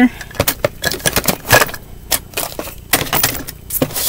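Small items and plastic packaging clattering and rustling as a hand rummages in a plastic storage drawer: an irregular run of clicks and knocks.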